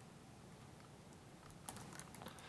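Near silence with faint room tone, then a few quick clicks of typing on a laptop keyboard near the end.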